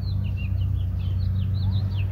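Small birds chirping in a quick series of short, falling chirps, over a steady low hum.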